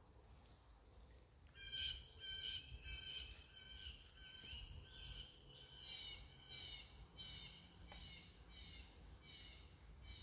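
A bird giving a long series of short, harsh calls, about two a second, starting about a second and a half in; the later calls dip slightly in pitch.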